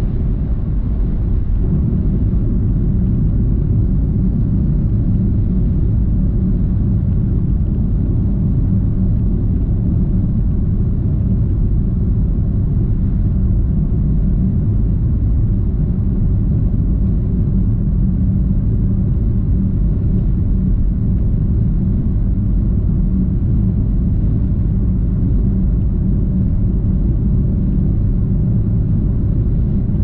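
Steady low road rumble of a car cruising at highway speed, heard from inside the cabin.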